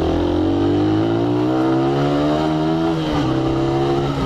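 Suzuki Raider 150R's single-cylinder four-stroke engine accelerating, its pitch climbing steadily. The pitch drops with an upshift about three seconds in, then climbs again.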